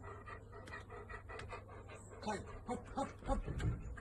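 A large husky-type dog panting in quick, repeated breaths, with a few short higher-pitched sounds in the second half.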